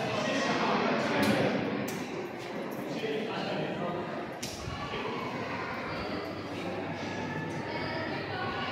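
Indistinct voices echoing along a school corridor, with a few sharp clicks scattered through.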